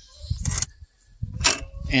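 A short pause in a man's talk, with a breath taken and soft low rumble, before his voice resumes near the end.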